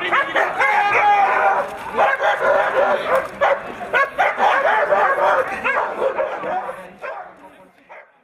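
Gendarmerie intervention dogs barking repeatedly and excitedly during a bite-work attack demonstration, the barks fading out near the end.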